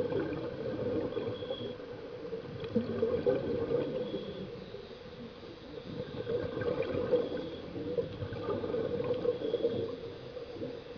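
Muffled bubbling and gurgling of water, swelling and fading every few seconds.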